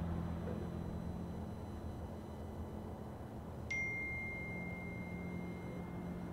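A low steady rumble of traffic, fading. About two-thirds of the way in, a single high electronic tone starts suddenly and holds steady.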